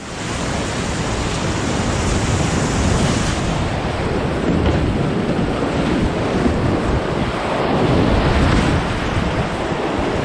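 Loud, steady rush of whitewater rapids heard from a kayak running through them, with water and wind buffeting the microphone.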